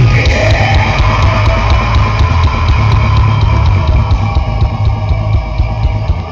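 A melodic death metal band playing live: distorted electric guitars over a drum kit keeping a fast, steady beat of about six hits a second. The recording is loud and heavy in the bass.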